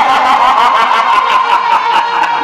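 Live Purulia Chhau dance music: a reed wind instrument holds a wavering high melody line over quick, steady drumbeats.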